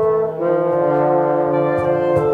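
A small ensemble of trombones, French horn and flute plays sustained chords, with the notes changing about half a second in.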